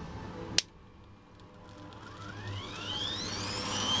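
A sharp click about half a second in, then the grinder motor driving a printer stepper motor as a generator spins up: a whine that climbs steadily in pitch and grows louder over a low hum.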